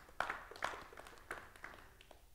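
A handful of faint, scattered hand claps, irregularly spaced, each with a short ring of room echo.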